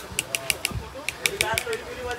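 Camera shutter firing in rapid burst mode, about six sharp clicks a second, in two runs with a short pause between them. Faint voices are in the background.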